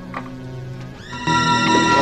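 Horror film soundtrack: a quiet low hum, then about a second in a loud sustained chord of score music comes in suddenly and holds.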